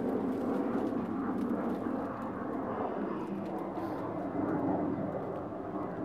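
Steady drone of a distant engine, holding at much the same level throughout.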